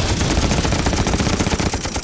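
Belt-fed machine gun firing one long, rapid, continuous burst of shots.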